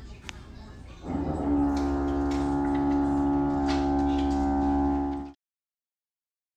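A steady pitched tone with a rich, unchanging timbre sets in about a second in, holds level and cuts off suddenly near the end. Before it, faint noise with a few sharp clicks.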